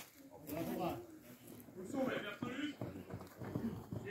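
Voices of football players and spectators calling out on an open pitch, in short, scattered calls. The voices are farther off than the speech just before and after.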